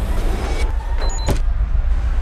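Deep, steady low rumble with a noisy rush over it, with a brief high double beep about a second in and a single sharp hit just after it.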